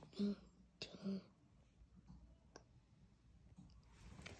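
Two short spoken syllables in the first second or so, a couple of faint clicks, then low room tone.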